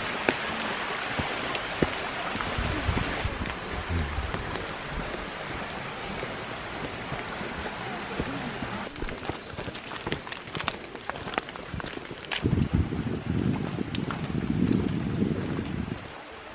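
A steady hiss of running water from a shallow rocky stream. From about halfway there are scattered ticks and crunches, and wind rumbles on the microphone over the last few seconds.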